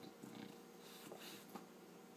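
Bulldog snuffling faintly with its nose pushed into a beanbag's fabric cover, with soft rustles of the cloth and a small click.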